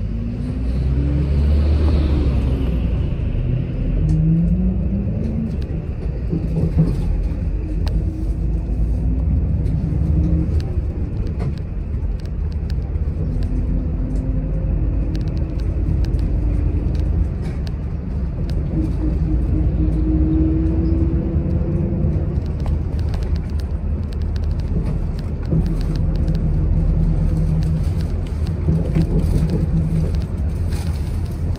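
Interior of a wide-area commuter bus under way: a steady low engine and road rumble. An engine whine climbs in pitch over the first few seconds as the bus picks up speed, and a steadier hum runs through the middle stretch.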